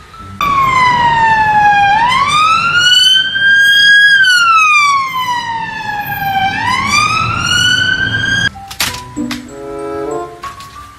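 Police car siren wailing, its pitch sliding slowly down and up in long sweeps of about two and a half seconds each. It cuts off abruptly near the end.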